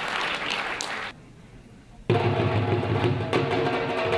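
Applause for about a second, a short lull, then about two seconds in a dhol drum starts up suddenly with music, played loudly in a steady rhythm.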